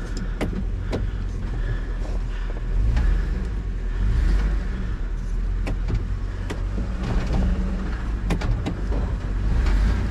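Pickup truck engine rumbling and revving up several times under load as it strains to pull a hitched camper trailer that won't budge, with scattered clicks and knocks.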